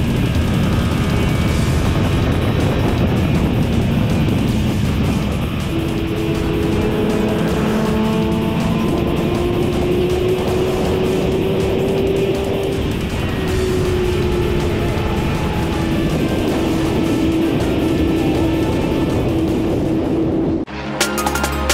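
Sport motorcycle running at high speed in a high gear, under heavy, steady wind rush; from about six seconds in, a steady engine note slowly rises and then eases back. Music plays over it.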